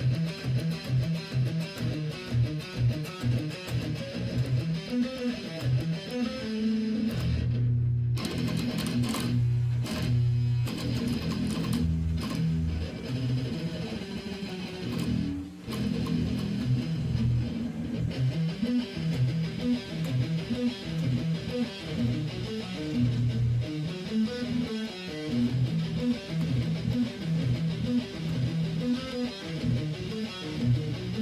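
Electric guitar playing heavy riffs: fast, repeated low notes, with a stretch of longer held low notes about eight seconds in.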